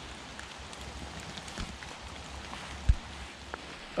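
Outdoor woodland ambience with faint scattered drips of rain ticking on leaves and a low rumble of wind on the microphone, broken by a single short low thump about three seconds in.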